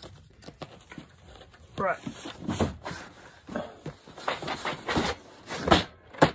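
Cardboard board-game boxes being shuffled and pulled off a stacked shelf: a string of soft knocks, scrapes and rustles.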